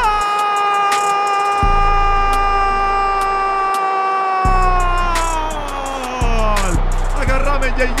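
A football commentator's drawn-out goal cry in Spanish: one long shouted note held for about six seconds before its pitch slides down, over a hip-hop beat.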